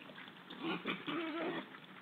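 Wild boar calling: a short wavering squeal about half a second in, then a longer one wobbling in pitch until about a second and a half, over the faint clicking and pattering of the group rooting and feeding in wet mud.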